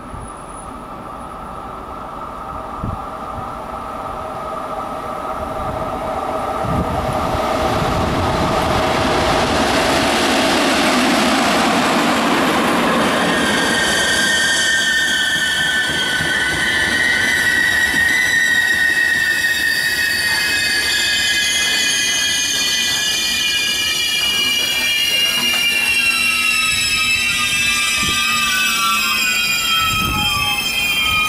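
An FS E656 electric locomotive hauling a rake of new Intercity driving coaches approaches, growing steadily louder over about ten seconds, and passes at speed. As the coaches roll by, the wheels squeal in several high, wavering tones.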